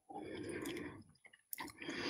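Faint mouth sounds of a person sipping and swallowing whisky, followed by a short click about one and a half seconds in.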